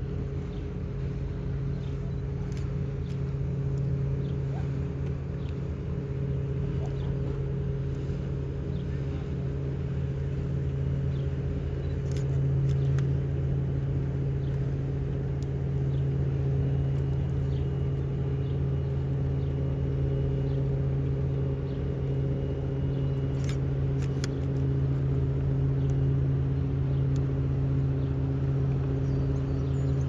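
Steady low drone of the diesel lake freighter H. Lee White's engines and machinery as its hull passes close by, getting a little louder about twelve seconds in.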